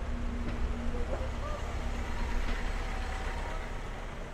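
Low engine rumble of a double-decker bus driving past along a city street, over general traffic noise.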